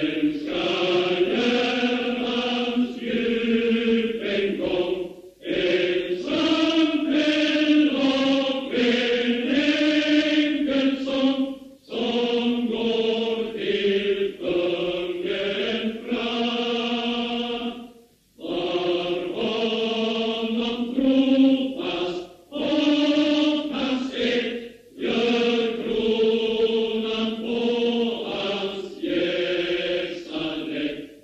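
A choir singing a slow, hymn-like song, with sustained notes in phrases of a few seconds each and brief pauses between phrases.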